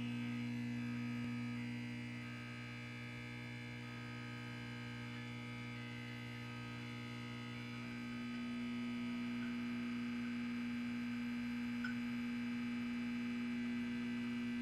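Steady electrical mains hum with a faint buzz, dipping slightly a couple of seconds in and coming back up about eight seconds in, with a faint tick near the end.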